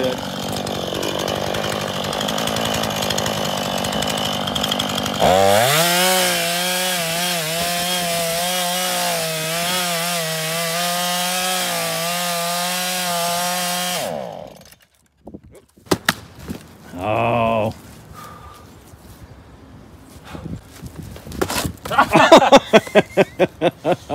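Gas two-stroke chainsaw cutting through a tree trunk: it runs for the first few seconds, then from about five seconds in holds a steady high note at full throttle until it cuts off suddenly around the middle. After a lull, a few scattered knocks and then a quick run of sharp knocks near the end.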